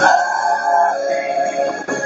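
Mixed choir of men's and women's voices singing, holding a long chord that changes about a second in, with a brief break just before the end.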